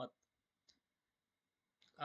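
Near silence: room tone with a single faint short click about two-thirds of a second in.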